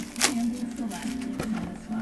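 Clear plastic shrink-wrap crinkling as it is handled and pulled off a cardboard trading-card box, with a sharp crackle about a quarter-second in and a smaller one later.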